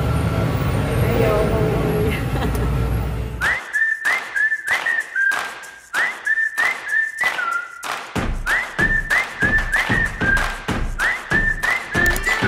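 Upbeat intro jingle: a whistled tune of short, upward-sliding notes over a steady percussive beat, starting about three and a half seconds in, with a bass line joining at about eight seconds. Before it there is a low steady rumble.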